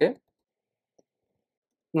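Near silence between spoken words, with one faint short click about a second in.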